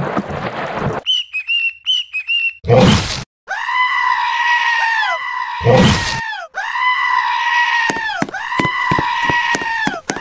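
Cartoon sound effects: a quick run of short high chirps and a loud burst, then a held, high wailing scream that drops in pitch as it ends, repeated about four times, with a second burst between and rapid ticking under the last screams.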